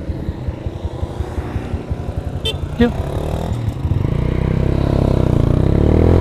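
Honda motorcycle engine running at low revs with a choppy pulse, then pulling harder from about three and a half seconds in and growing steadily louder as the bike accelerates.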